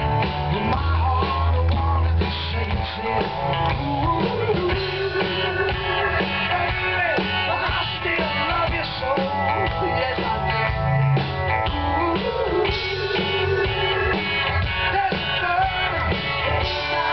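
Live band playing an amplified song with electric guitars, bass, keyboards and drum kit, heard loud and continuous from within the audience.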